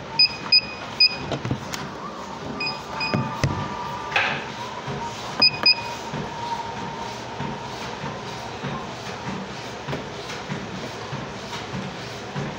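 Exercise machine console beeping: short, high electronic beeps in quick groups, three, then two, then two, as its buttons are pressed, over a steady machine hum.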